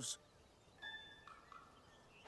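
Near quiet, with a few faint whistled bird calls about a second in.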